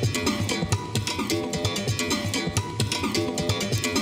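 Electronic music loop playing back: a glitchy synth pattern with a sampled berimbau part layered over it, giving a rhythmic plucked-string sound.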